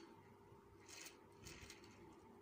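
Very faint rolling and rubbing of a Hot Wheels Dune It Up die-cast toy car's plastic wheels, pushed by hand over a slatted surface, with two brief scratchy moments about one and one and a half seconds in.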